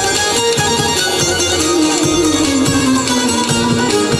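Albanian folk music played live: plucked string instruments with a held melody line that slowly falls in pitch.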